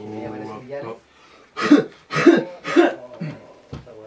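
A man holds a steady sung note that breaks off about a second in, then coughs three times in quick succession, loud and harsh, with a smaller cough after.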